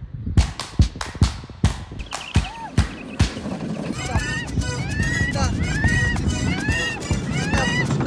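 Background music with a clicking beat, then from about halfway a high-pitched wailing cry that rises and falls over and over like a police siren, over the low rumble of the luge carts rolling on the track.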